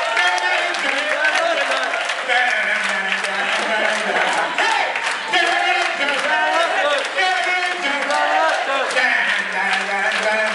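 A man singing loudly into a microphone without accompaniment, holding long notes, while the audience claps and cheers.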